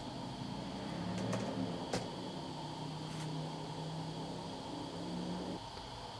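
Quiet room tone with a steady low hum that cuts off shortly before the end, and a few sparse clicks from keys being pressed on a tablet's keyboard cover.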